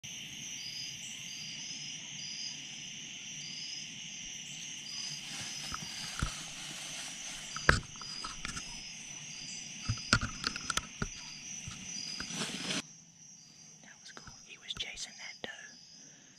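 Evening insect chorus: a steady high-pitched drone with a repeating pulsed call, broken by scattered clicks and knocks of gear being handled up in the tree, the sharpest a little before halfway. The chorus drops out suddenly about three quarters of the way through, leaving a quieter stretch with a few more clicks.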